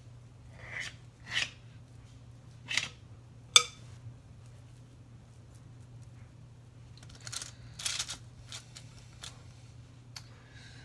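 Brief rustles and soft pats of sticky dough being patted into patties on parchment paper on a metal baking sheet, in two spells, with one sharp tap about three and a half seconds in. A steady low hum runs underneath.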